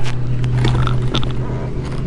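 A steady low mechanical hum, as of a running engine or motor, with a few light clicks and scrapes.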